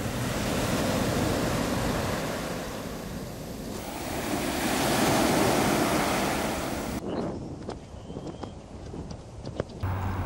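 Surf breaking and washing up a sand-and-shingle beach, with wind on the microphone; the rush of the waves swells to its loudest about halfway through. Near the end it cuts to a quieter stretch with a few faint clicks.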